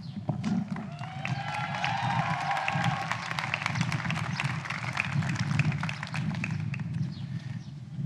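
A large outdoor audience applauding, a steady patter of many claps, with a faint voice rising from the crowd between about one and three seconds in.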